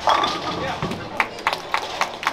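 A voice right at the start, then a run of sharp knocks, about four a second.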